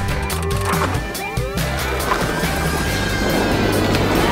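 Title-sequence theme music with a steady bass line, layered with electronic sound effects: sweeping tones in the first second and a half, then a swelling hiss through the second half.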